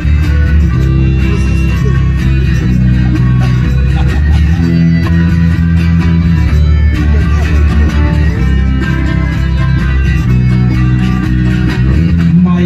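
Live acoustic band playing an instrumental passage: strummed acoustic guitar and accordion over a bass guitar, with the chords changing every second or two.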